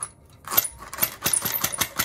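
A caulking gun's thin metal puncture rod jabbed and worked quickly inside the cut plastic nozzle of a caulk tube to clear the caulk inside, giving a rapid run of sharp clicks and scrapes, about nine a second, from about half a second in.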